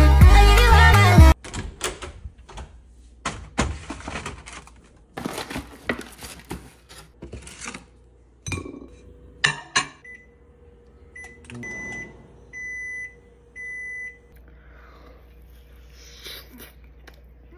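Music cuts off suddenly about a second in, followed by scattered handling clicks, rustles and a few knocks. In the second half a microwave oven beeps: a few short keypad beeps, then two longer beeps, over a faint steady hum.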